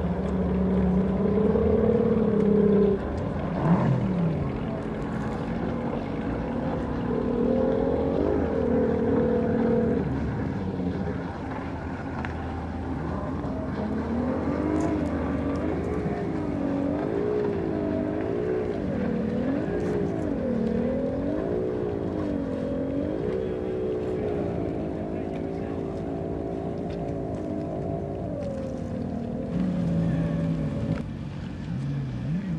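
Personal watercraft engine running hard on open water, its pitch rising and falling over and over as the craft runs across the water; through the second half the engine note swings up and down about once a second.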